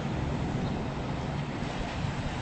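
Steady low rumble of vehicle noise, even throughout, with no distinct events.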